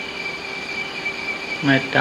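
Steady hiss and a constant high-pitched whine from an old tape recording, heard in a pause between spoken phrases; a man's voice speaking Thai comes back near the end.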